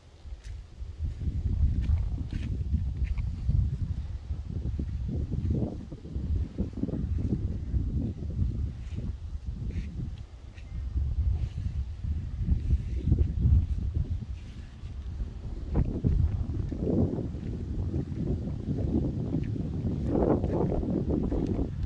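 Wind buffeting a phone's microphone: an uneven low rumble that rises and falls in gusts, starting about a second in.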